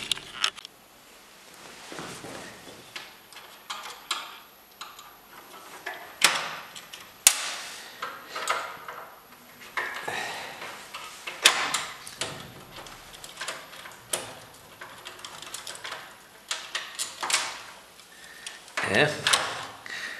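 Screwdriver taking screws out of a sheet-metal fluorescent light fixture, with irregular sharp metal clicks and clinks as the screws, lampholders and a wiring strip are handled.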